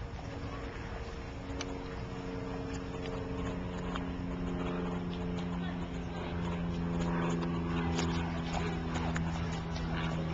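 A steady motor or engine hum at one unchanging pitch, slowly getting louder, with scattered light clicks.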